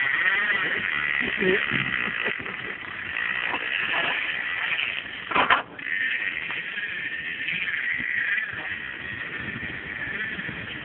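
Fishing reel's drag buzzing almost without pause as a hooked false albacore runs line off the reel. A single sharp knock cuts in about halfway through.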